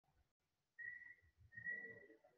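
Faint whistling over near silence: two short, steady high notes, the first about a second in and a slightly longer one near the end.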